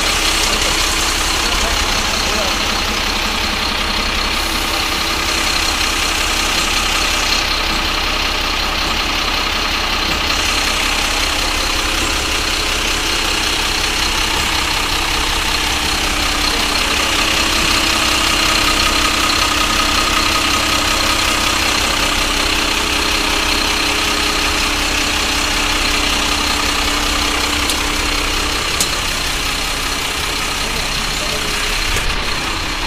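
Freshly overhauled diesel engine of an Eicher Pro 6025T tipper truck running steadily at idle after its rebuild, with a constant level and no revving.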